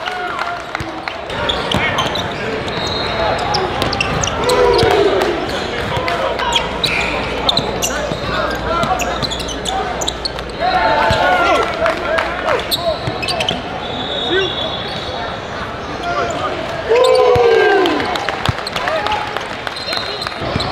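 Live basketball game sound in a gym: a ball dribbling and bouncing on the hardwood court in quick sharp knocks, with indistinct voices of players and spectators and an echoing large hall. Several short squeals rise above the din near 5, 11 and 17 seconds.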